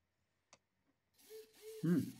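Small hobby servo motors whirring in short stop-start bursts with gear noise as they follow potentiometer knobs turned by hand, the angle commands sent over HC-12 wireless modules; the whirring starts a little over a second in. A single short click comes about half a second in.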